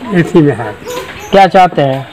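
Only speech: a man's voice talking in a halting, broken way.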